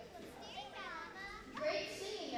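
Young children's voices chattering and calling out indistinctly, with one louder high child's voice near the end.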